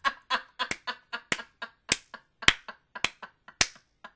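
A person's sharp hand claps, about two a second, mixed with short breathy bursts of laughter.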